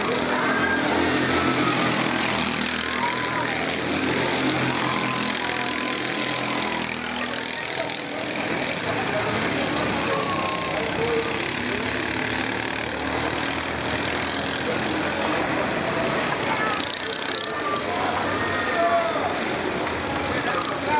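Racing kart engines running around the circuit, their pitch repeatedly rising and falling as the karts accelerate and brake through the corners. Unclear voices run underneath.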